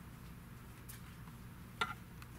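A steady low hum with a faint tick about a second in and a single short, sharp click with a brief ring near the end.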